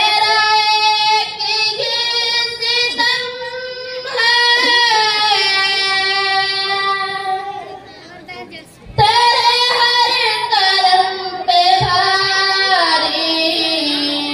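A girl singing a ghazal solo, in long held melodic phrases with a short pause near the middle before the next phrase.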